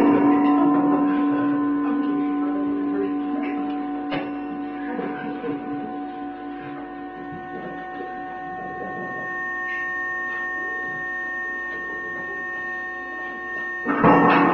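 A held drone of several steady tones, fading over the first few seconds and then holding level, with a faint click about four seconds in. A loud hit comes right at the end.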